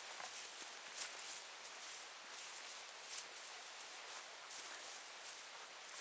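Faint footsteps and brushing of clothes against vegetation as people walk along an overgrown woodland path, with soft irregular steps about once a second.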